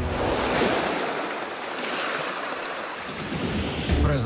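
Ocean surf: a steady hiss of breaking, washing waves, swelling about half a second in and then slowly easing.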